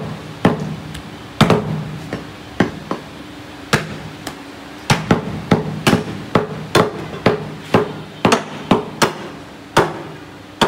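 Meat cleavers chopping beef on round wooden chopping blocks: sharp, irregular chops, a few spaced strokes at first, then quicker, about two to three a second, through the second half.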